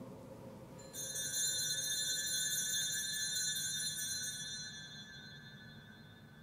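Altar bell rung at the elevation of the chalice after the consecration: it strikes about a second in with a bright, high ring that fades away over about four seconds.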